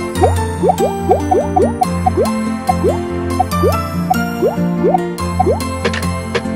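Children's cartoon background music with a run of quick rising 'bloop' sound effects, about two or three a second, that mark animated toy parts popping into place.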